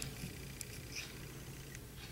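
Quiet room tone with a faint steady low hum and a few tiny ticks as a metal dotting stylus picks up gel polish from a palette and dots it onto a nail.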